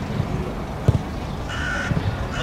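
A football kicked once, a sharp thud about a second in, as a penalty is struck. Near the end a short, steady high call or whistle sounds over a low outdoor rumble.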